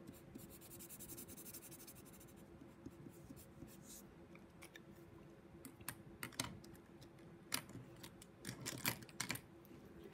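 Faint scratching of a felt-tip marker coloring on paper. Later come scattered sharp clicks of plastic markers being handled on the table as one is set down and another picked up.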